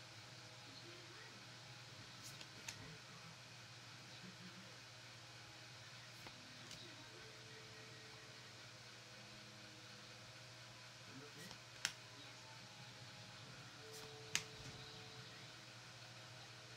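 Quiet room tone with a steady low hum, broken by a few brief faint clicks of trading cards being flipped and slid in the hands; the two clearest come about twelve and fourteen seconds in.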